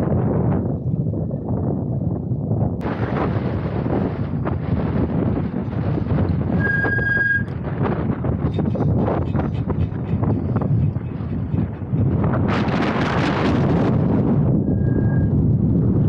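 Wind buffeting the microphone of a bike-mounted action camera while riding, an uneven rumble with a hissier surge a little before the end. A short steady high squeal sounds about seven seconds in and again, fainter, near the end.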